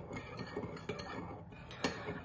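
A spoon stirring in a mug, clinking lightly and irregularly against the side a few times a second, with a sharper clink near the end.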